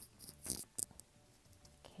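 A few quick, sharp taps and clicks from a paintbrush being handled at the painting table, bunched in the first second.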